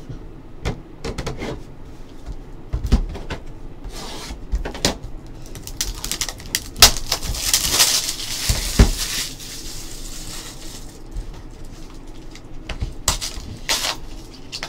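Handling noise on a tabletop: scattered clicks and knocks as a plastic card slab and a cardboard card box are moved and opened, with a stretch of rustling packaging from about seven to nine seconds in and a few sharp clicks near the end.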